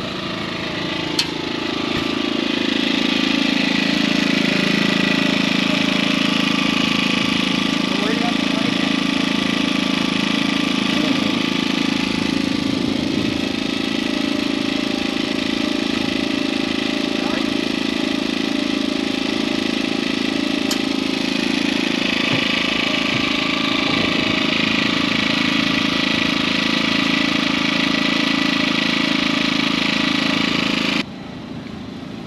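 A small engine running at a steady speed, a constant drone that swells over the first couple of seconds and then holds even.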